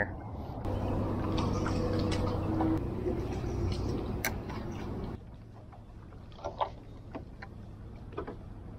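A small boat's motor running steadily with water and wind noise, then a sudden cut to a quieter bed of water sounds with a few faint clicks after about five seconds.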